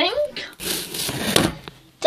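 Rustling handling noise as the phone camera is moved and its microphone rubs against clothing, with a sharp click about a second and a half in; it dies away near the end.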